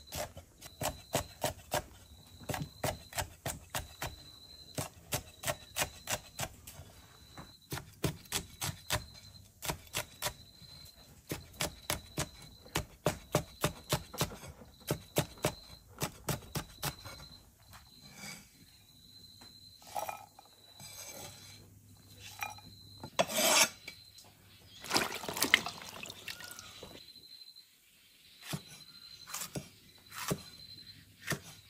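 Cleaver chopping bird's eye chillies and garlic on a wooden chopping block: quick knocks about three a second that thin out past the middle. Two longer rasping sounds come about two-thirds through, then a few more cuts near the end.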